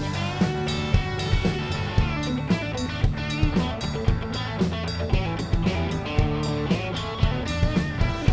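Live country-rock band playing with guitar and drum kit to a steady beat.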